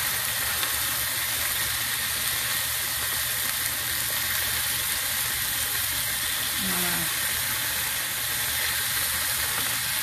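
Hamburger patties sizzling steadily in fat in a hot cast iron skillet, as they are turned with a metal spatula.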